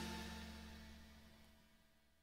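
The final chord of a western swing band with horns dying away: the held notes and cymbal ring fade out to silence about a second in.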